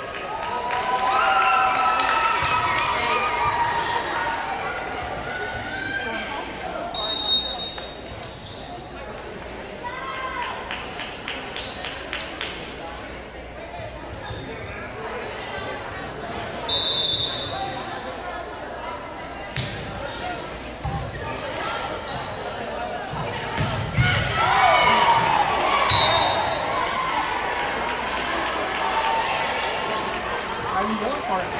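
Volleyball players' voices and shouted team chants in a gymnasium, with a referee's whistle blown briefly twice, about a third and about halfway through, and a ball bouncing on the hardwood floor.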